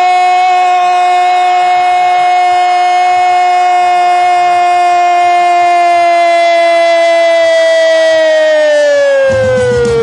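A radio football narrator's long held "gol" shout on one high, steady note, sagging in pitch near the end as his breath runs out. Music comes in underneath just before it ends.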